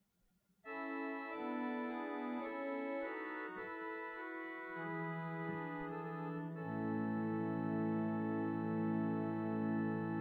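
Virtual pipe organ sounding samples of the 1898 Hope-Jones organ's swell Phonema, a quiet, slightly stringy flute stop, with an undulating celeste rank added, playing a slow passage of held chords. It begins about half a second in, and lower notes enter about halfway through.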